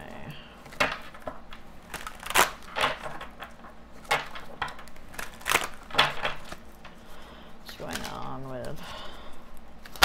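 A deck of oracle cards being shuffled by hand: a series of sharp slaps and clicks, one or two a second, as the cards strike each other.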